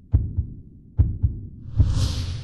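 Soundtrack music bed of low, heartbeat-like double thumps, a pair a little under every second, with a swelling whoosh rising near the end.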